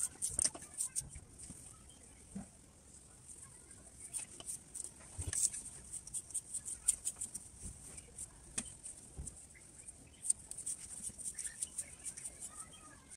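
Fabric rustling with scattered light clicks and taps as a fabric panel's tube pocket is slid onto the tube of a backdrop stand.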